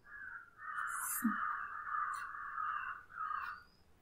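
Pen stylus scratching across a tablet screen while a resistor symbol is drawn: a steady, scratchy hiss lasting about three seconds, broken twice briefly.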